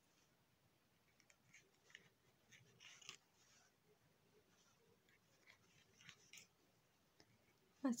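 Near silence with faint, short scratchy rustles, a few of them around three seconds in and again near six seconds: a sewing needle drawing yarn through crocheted fabric and the fingers handling the doll.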